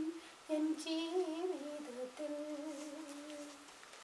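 A voice humming a slow melody in long held notes, pausing briefly about half a second in and again around two seconds in. A short high squeal sounds about a second in.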